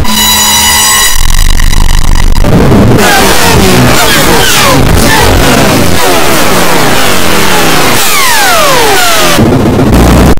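Very loud, heavily distorted and clipped effects-edited audio. A harsh buzzing tone comes in the first second, then a dense noisy wash filled with many falling pitch sweeps.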